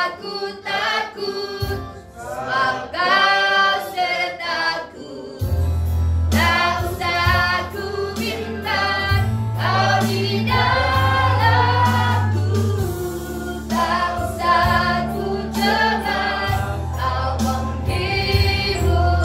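A woman singing a Christian worship song, with other voices singing along. The instrumental accompaniment adds steady low bass notes from about five seconds in.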